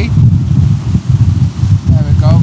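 Strong gusting wind buffeting the microphone, a heavy uneven rumble, over surf breaking on a rocky shore.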